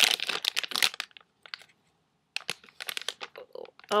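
Soft plastic wipes pack crinkling as a wet wipe is pulled out of it, in two spells of crackling with a short pause between.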